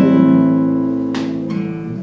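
Nylon-string classical guitar: a chord strummed at the start rings out and slowly fades, with a second, lighter stroke about a second in. It is one chord of a slow practice run through an A minor progression.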